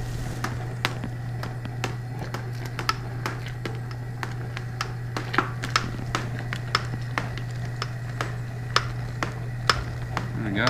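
Long brewing spoon clicking and tapping irregularly against the side of a stainless steel brew kettle as the wort is stirred and a thick jalapeño-honey mixture is poured in, over a steady low hum.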